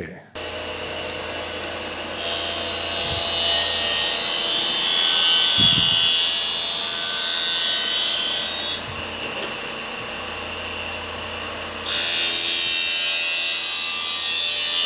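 Ettrich SBR900 reel grinder relief-grinding the blades of a reel mower's cutting cylinder. A steady motor hum runs throughout. About two seconds in, a loud high grinding hiss of wheel on steel starts; it drops away for about three seconds and comes back near the end.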